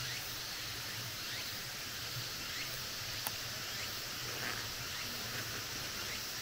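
Quiet forest ambience: a steady high hiss with a few faint, short rising chirps scattered through it and a single small click about three seconds in.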